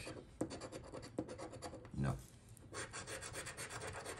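A paper scratch-off lottery ticket being scratched with the edge of a large metal coin: quick rapid scraping strokes across the card's coating, with one short vocal sound about two seconds in.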